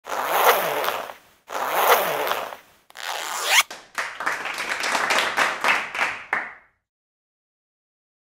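Zipper on a hard-shell pencil case being pulled open in three long strokes, the third ending with a rising zip. Then a few seconds of quick clicks and rattles before the sound cuts off suddenly near the end.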